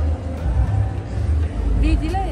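Market background: a steady low rumble with indistinct voices, and a voice rising just at the end.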